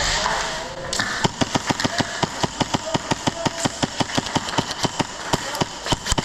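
Airsoft gun firing a rapid string of shots, about five a second, starting about a second in and continuing without a break. A brief rush of noise comes before it.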